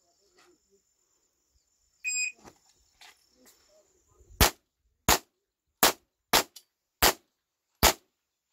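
Electronic shot timer beeps once about two seconds in; a little over two seconds later a pistol fires six shots, roughly one every 0.6 to 0.8 s, in a timed quick-draw string. A faint steady insect whine runs under the first half.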